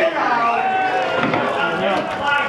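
Several men's voices overlapping at a football ground: shouts and calls from players on the pitch mixed with spectators' talk, with no single clear speaker.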